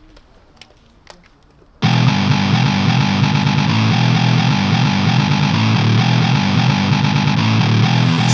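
Faint background with a few light knocks, then about two seconds in loud music with distorted electric guitar cuts in abruptly and carries on.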